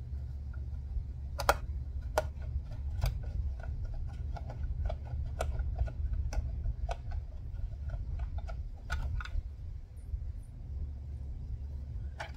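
Long Phillips screwdriver backing machine screws out of the deep wells of a Minn Kota Terrova trolling motor head: irregular small clicks, about one or two a second, over a low rumble.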